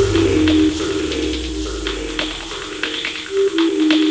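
Hard-edged house track in a breakdown: the heavy kick drum stops right at the start, leaving a stepping synth riff and sparse percussion ticks, while a low bass tail fades away over the first two seconds or so.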